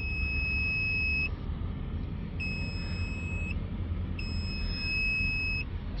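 Digital multimeter's continuity beeper sounding three long steady beeps of about a second each while its probes bridge diesel glow plugs. The beeps mean the plugs' heater elements have continuity and conduct. A low steady rumble runs underneath.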